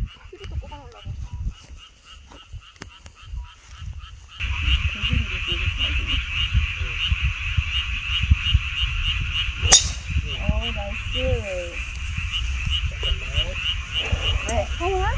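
Chorus of frogs calling in steady repeated pulses, growing suddenly louder about four seconds in. Just before ten seconds in there is a single sharp crack of a golf driver striking the ball off the tee, followed by brief voices.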